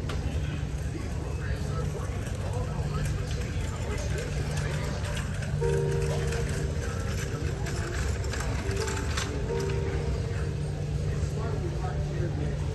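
Laundromat background: a steady low rumble with indistinct voices, and music with held notes coming in about halfway through.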